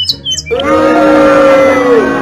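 A few short, high chirps, then background music with long held notes starts about half a second in and stays loud.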